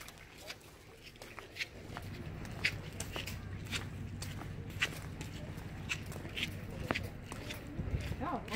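Footsteps of a person walking, about two steps a second. A steady low hum comes in about two seconds in.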